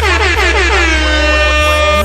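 A single long horn-like blast, like a DJ air-horn effect, over a bass-heavy hip-hop beat. Its pitch slides down over about the first second and then holds steady.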